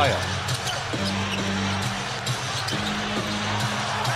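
Live basketball game sound in an arena: a ball bouncing on the hardwood court over crowd noise. Arena music holds low notes that change about a second in and again near three seconds.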